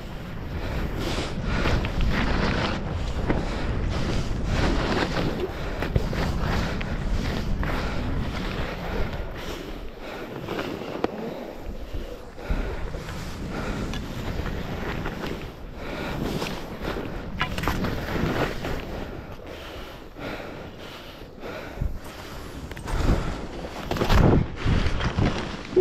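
Skis hissing and scraping through snow in a run of turns, with wind rushing over the microphone. Right at the end, a few loud knocks and rustles as a jacket sleeve and glove brush against the camera.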